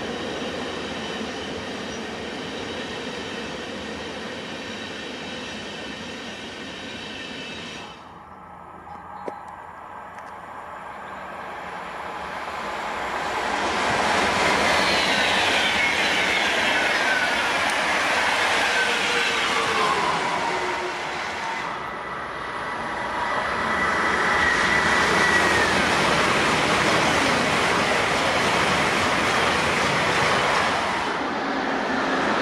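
Three electric passenger trains passing one after another. First a locomotive-hauled Flixtrain runs by with steady electric whine and wheel-on-rail noise. After a brief lull with a click, an ICE high-speed train builds to a loud pass with tones falling in pitch, then a locomotive-hauled EC train goes by with a high steady whine that drops in pitch.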